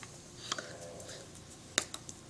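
Sharp clicks of hands and fingers striking each other while signing: one about a quarter of the way in, then two in quick succession near the end, the first of these the loudest.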